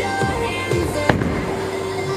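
Pop music playing over the bowling alley's sound system, with one sharp thud about a second in as a bowling ball lands on the lane, followed by the ball rolling.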